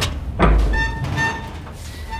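Horror-film sound design: a sharp hit, then a deep boom about half a second in, followed by two short electronic beeps about half a second apart over a low rumble.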